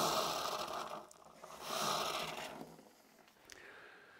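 Water running into a cup at the kitchen sink, tailing off about a second in. About half a second later comes a second-long scraping sound as the drink is made up.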